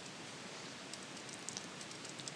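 Faint computer-keyboard typing: a few light key clicks over a steady background hiss.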